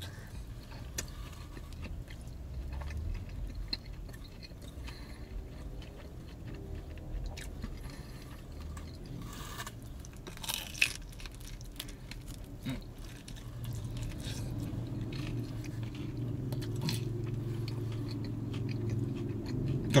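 A person chewing a mouthful of crispy-crusted Detroit-style pizza: soft crunching and wet smacking, with one sharper crunch about eleven seconds in. A low steady hum comes up in the second half.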